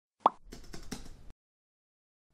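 Intro-animation sound effects: a single short pop, then a run of faint, quick keyboard-typing clicks lasting under a second.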